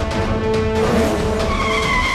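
Cartoon car sound effect: a car rushes in and skids to a stop, tyres squealing through the second half, over background music.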